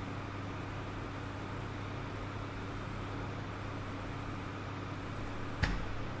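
Steady low hum and hiss of room background noise, with a single sharp click shortly before the end.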